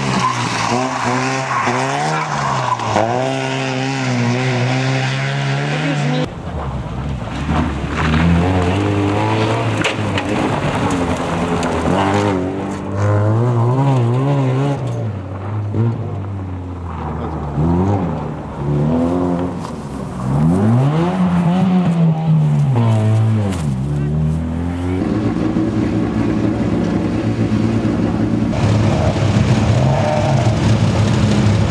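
Opel Astra GSI rally car's engine revving hard past the camera in several separate passes, its pitch climbing and dropping with each gear change and lift of the throttle. Over the last few seconds there is a steadier engine sound.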